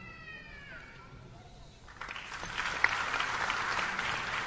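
Audience applauding, starting about halfway through and growing louder. Before it comes a brief, faint high-pitched tone that dips in pitch as it fades.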